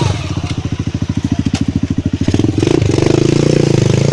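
Dirt bike engine running at low revs with a steady, even pulsing beat, picking up a little past halfway through, with a few sharp knocks as the bike rolls down rough ground.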